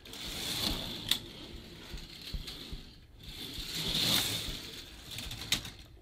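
K'Nex roller coaster train rolling along its plastic track: a rattling rumble that swells and fades twice, with a sharp click about a second in and another near the end.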